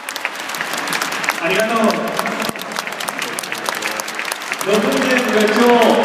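Stadium crowd applauding, dense steady clapping, with a voice over the stadium loudspeakers briefly about a second and a half in and again near the end.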